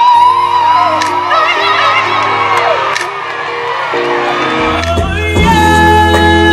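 Live R&B band performance: a woman sings a long, wavering, ornamented vocal line with vibrato over sustained keyboard chords, and a deep bass note comes in near the end.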